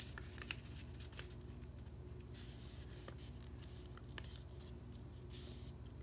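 A sheet of paper rustling and being creased by hand as it is folded in half into a triangle: soft scraping rustles, the longest about two seconds in and again near the end, with a few small clicks. A faint steady hum lies underneath.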